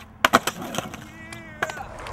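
Skateboard landing: two sharp clacks about a tenth of a second apart as the board's wheels hit the pavement, followed by another single clack near the end.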